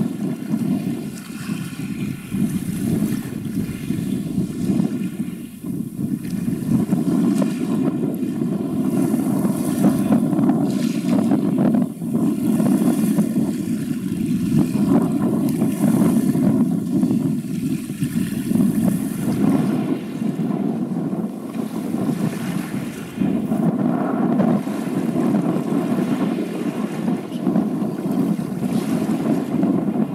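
Gusty wind rumbling on the microphone, swelling and easing every few seconds, over a faint steady hum from a large container ship under way.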